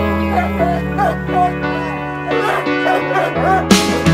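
A dog whining and yipping in short, wavering cries over background music. The music holds steady chords, and a loud hit near the end brings in a fuller, louder section.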